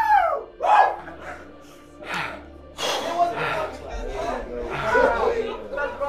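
Men's voices calling out in short bursts, then several voices overlapping, over background music.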